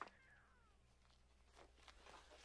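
Near silence, with one faint falling whine in the first second.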